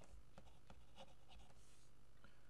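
Pen writing on paper: a handful of faint short scratching strokes as a word is written out, ending in a brief longer stroke.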